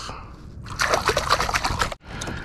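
Water sloshing and splashing close by, from a hand in the water at the kayak's side where a striped bass has just been released. It starts about a third of the way in and lasts about a second.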